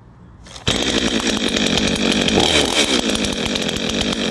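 62cc two-stroke chainsaw fitted with an adjustable muffler exit, starting suddenly about two-thirds of a second in and then running loud and steady.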